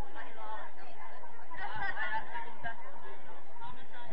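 Indistinct voices of players and spectators calling out and chatting during an amateur football match, with one louder, higher call a little under two seconds in.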